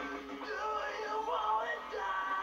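A man singing along to a rock karaoke backing track, his voice sliding in pitch over the band. It is heard played back from a television.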